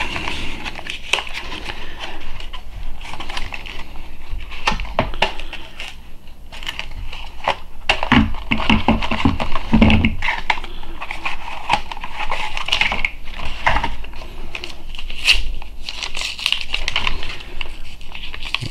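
Small plastic dropper bottles from a Vallejo paint set and their cardboard box and paper leaflet being handled on a table: irregular clicks and knocks as bottles are set down, with crinkling and rustling of the packaging.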